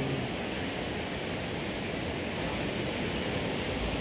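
Steady rushing of water flowing over rock, an even, unbroken noise.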